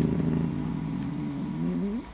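A man's drawn-out hesitation sound, a held 'uhhh' of about two seconds at a low, steady pitch that rises near the end.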